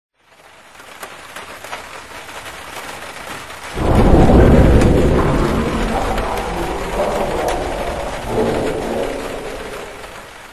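Rain falling, then a loud clap of thunder about four seconds in that rolls and slowly dies away. A second, smaller rumble comes near the end.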